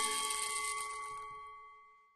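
The final chord of a song, with a few sustained notes ringing out and fading away to silence a little before two seconds in.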